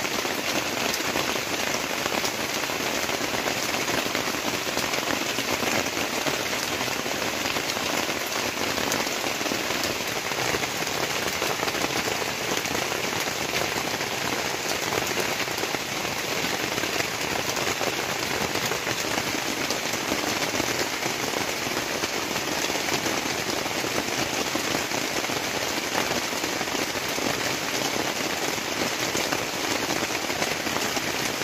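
Steady rain falling on a plastic tarpaulin shelter and the surrounding forest, with water streaming off the tarp's edge.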